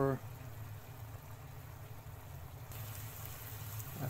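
Bamboo shoot strips frying in oil in a frying pan: a steady sizzle over a low steady hum. The hiss grows brighter about three quarters of the way in.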